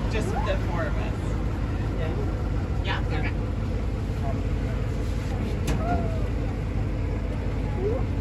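A park road-train riding along a paved road, heard from its open passenger car: a steady low rumble of the ride, with a few brief, faint snatches of voices.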